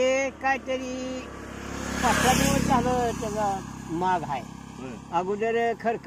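A man talking, with a motorcycle passing on the road: its noise swells and fades about two to three seconds in.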